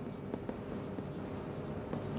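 Marker pen writing on a whiteboard: faint strokes and small taps of the tip against the board over a low steady room hum.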